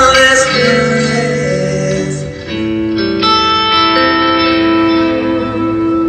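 Electric guitar playing a lead with long held notes, one note sustained for about three seconds from halfway on, over a looped backing from a Headrush pedal board.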